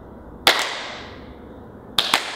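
Two slow hand claps about a second and a half apart, each echoing in a large hall.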